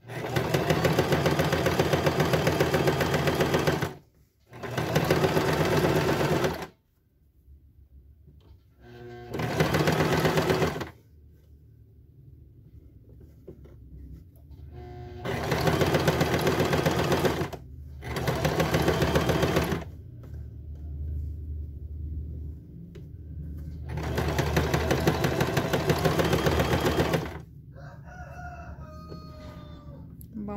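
Singer domestic sewing machine stitching a topstitch along folded-in seam allowances on stretch fabric. It runs in about six bursts of two to four seconds, with short pauses between them as the fabric is repositioned.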